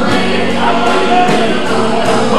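Southern gospel family group singing in harmony, with a steady beat behind the voices.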